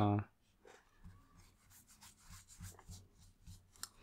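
Faint rubbing and soft ticking of air-cushion-finish Bicycle playing cards sliding over one another as they are spread between the hands.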